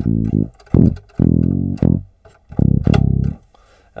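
Sampled electric bass played from a MIDI keyboard through a Kontakt bass instrument: about four separate low plucked notes, the first already sounding at the start and ending about half a second in, the others short and spaced with brief gaps.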